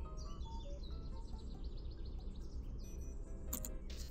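Animation soundtrack: background music over jungle ambience full of short chirping bird calls, with a low steady spaceship hum underneath. A brief hissing sound effect flashes up about three and a half seconds in.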